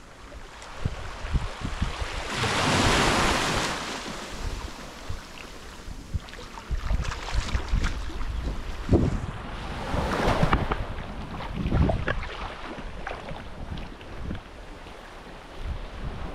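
Wind buffeting the microphone over small waves washing onto a sandy beach, with a louder wash of surf hiss a couple of seconds in and again about ten seconds in.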